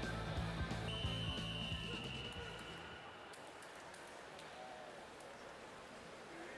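Arena music fades out over the first two or three seconds. Over it, a single long, steady whistle lasts about two seconds. This is the referee's long whistle calling the swimmers up onto the starting blocks.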